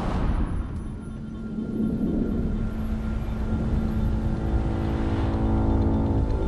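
Film sound design: a deep, steady rumble with a sustained drone that comes in about two seconds in and thickens into a held chord towards the end. It goes with a cloud of toxic gas rolling along a street.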